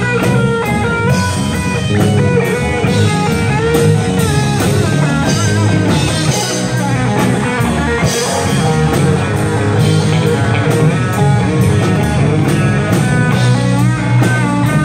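Live rock band playing an instrumental passage: an electric guitar lead with bending notes over bass guitar and drum kit.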